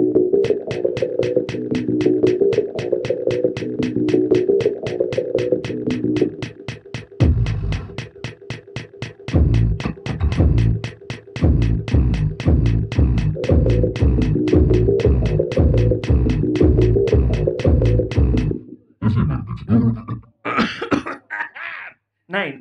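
Live-looped electronic music from a Boss RC-505mk2 loop station: a fast, even click pulse of about four a second over a sustained looped layer. A deep kick-like thump about twice a second joins about seven seconds in. The loop stops abruptly about eighteen seconds in, leaving a few short vocal sounds.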